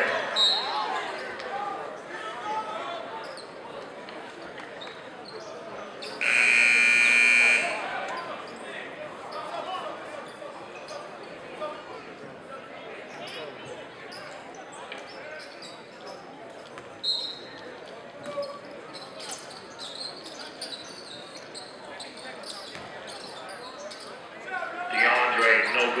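A gym scoreboard buzzer sounds once, steady, for about a second and a half, over the chatter of a crowd in a large hall. A basketball bounces on the court, and the crowd grows louder near the end.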